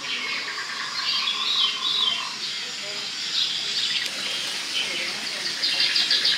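A continuous chorus of small birds chirping and twittering, high-pitched and overlapping.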